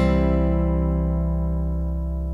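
A closing guitar chord with deep bass notes under it, struck just before and left ringing, slowly fading with no new notes.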